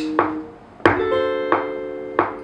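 Acoustic guitar software instrument in Logic playing back sustained chords. One chord dies away early, then two new chords strike about a second in and half a second later, each left ringing.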